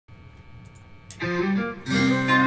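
Fender Telecaster electric guitar in open G tuning: a faint steady hum for about a second, then a pick attack and the first few picked notes of the song's intro, building to a fuller chord at the end.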